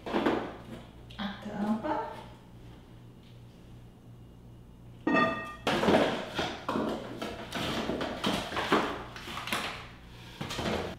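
Cardboard box and packaging rustling and scraping as a glass cake stand is unpacked, dense in the second half. A brief pitched sound comes just before the rustling starts.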